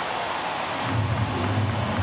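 Ballpark crowd noise, a steady roar, swelling as a home run carries into the right-center field seats, with a low steady hum coming in about a second in.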